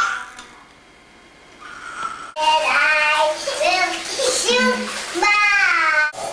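A baby babbling in the bath in long, high, sliding wordless sounds with short gaps, starting suddenly about two and a half seconds in, after a brief quiet lull.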